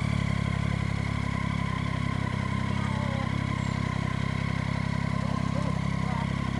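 Motorcycle engine running at a steady low speed as the bike rolls slowly along: an even, low drone with a fast, regular pulse and no revving.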